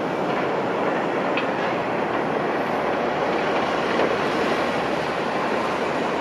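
Steady, even noise of heavy machinery at work, an excavator and a large dump truck running, with no rise or fall in level. There is a faint click about a second and a half in.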